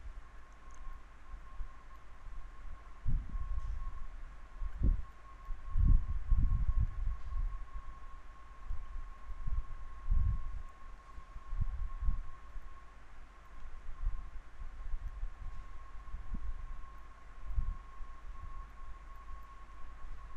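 Irregular low thumps and bumps of handling noise, heaviest about five to seven seconds in, over a steady high-pitched electrical whine.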